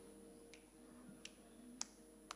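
Near silence while folk stringed instruments such as the bağlama are retuned between songs. There are a few faint low plucked notes and three short sharp clicks, the loudest near the end.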